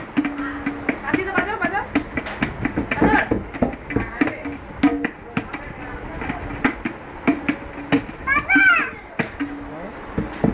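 Tabla pair struck by hand in an irregular, unpracticed way: many separate slaps and strokes, some leaving the small drum ringing with a held tone. A child's high voice calls out about a second in and again shortly before the end.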